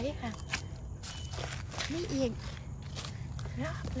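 Footsteps and crackles in dry leaf litter: several sharp ticks and crunches, under brief phrases of a woman speaking Thai, with a steady low rumble on the microphone.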